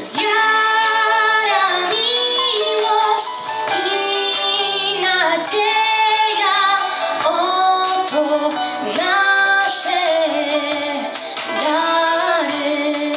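Young girls singing a Christmas carol into microphones, one clear melody line carried through sustained, gliding notes.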